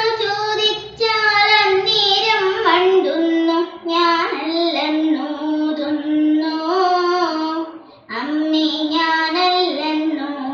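A young girl singing a Carnatic song solo, holding long notes that waver and slide in pitch, with short pauses for breath about a second in, just before four seconds, and about eight seconds in.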